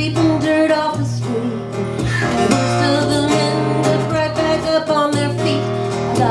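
A woman singing a folk song to her own strummed acoustic guitar, played live.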